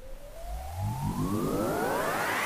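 Electronic music build-up: a synthesizer tone sweeps steadily upward in pitch, and about half a second in a second, richer rising sweep joins it, growing louder throughout.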